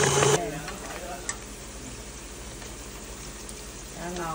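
A KitchenAid stand mixer's motor beating fish paste cuts off abruptly just under half a second in. Then comes a quieter steady sizzle of mackerel fish cakes shallow-frying in oil, with a single sharp click about a second later.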